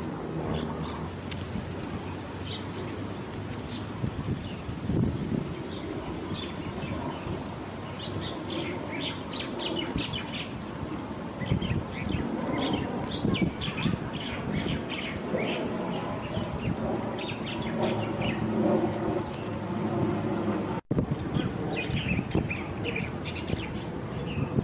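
Many small birds chirping and calling over a steady low rumble of traffic.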